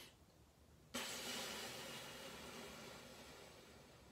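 A person's long, slow exhale through the mouth as part of a deliberate deep breath. It comes suddenly about a second in, after a short held pause, and fades gradually over the next few seconds.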